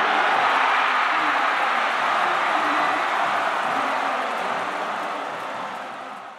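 Large baseball stadium crowd singing together in unison, thousands of voices blending into one dense wash. The sound fades out over the last couple of seconds.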